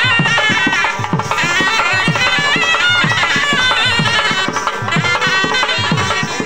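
Traditional dance music played live: a wind instrument plays a fast, wavering melody over a steady beat on hand-carried drums, about four strokes a second.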